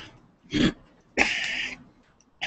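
A man coughing and clearing his throat into a podium microphone: a short burst about half a second in, then a longer, hissier one.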